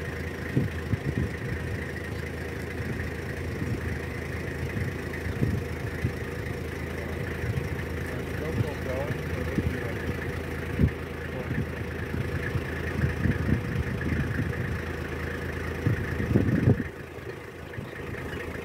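Vehicle engine idling with a steady low hum, with scattered short knocks and faint voices. The level drops sharply near the end.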